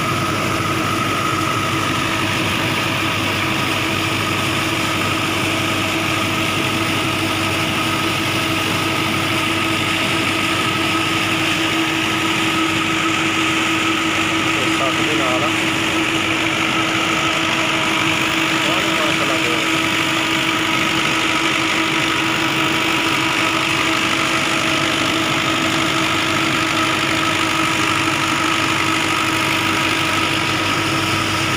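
A tubewell pump running with a steady machine hum, while water gushes from its outlet pipe into a concrete tank and rushes down the irrigation channels.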